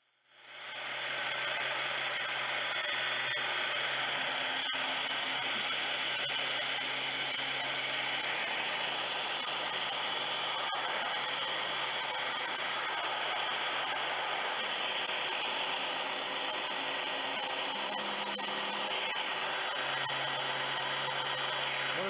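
Electric saw-chain sharpener running, its motor and grinding wheel starting at the beginning and then running steadily with a low hum and a high whirr.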